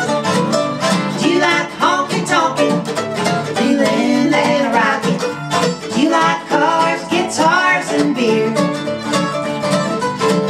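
A country song played live on mandolin and acoustic guitar, with a woman singing.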